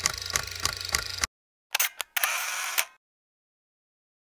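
Camera sound effects: a run of evenly spaced mechanical clicks over a low hum that stops a little over a second in, then a two-part shutter click and a short whirring burst that ends before three seconds.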